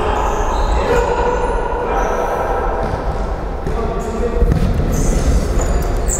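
Futsal game sounds in an echoing sports hall: the ball kicked and bouncing on the hard court floor, with players calling out.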